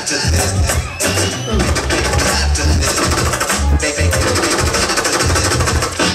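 Live hip-hop DJ set played loud through a club sound system: a heavy bass beat with turntable scratching, quick rising and falling pitch sweeps cut over the track.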